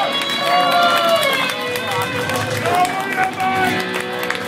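Live rock band playing, an electric guitar carrying the lead in long, bending, sustained notes over the band.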